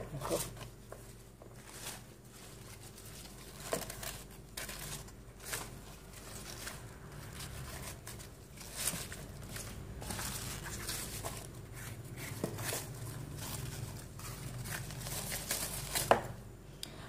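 A knife cutting the leaves away from mustard-green stalks: an irregular run of crisp cuts and leaf rustling.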